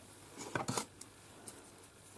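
A few faint, short rustles and taps of hands handling a plastic postal mailer envelope, clustered about half a second in, then single soft ticks.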